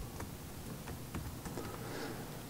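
Laptop keyboard being typed on: a handful of faint, scattered key taps over a steady room hiss.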